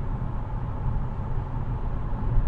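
Steady low rumble of road and tyre noise inside a car cabin at highway speed.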